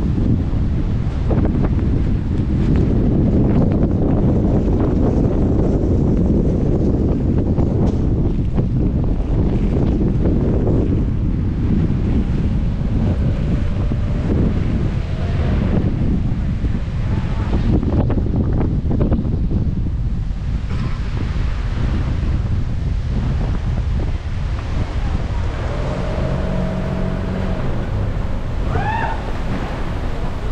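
Storm wind buffeting a vehicle-mounted camera's microphone: a loud, steady low rumble that swells and eases in gusts.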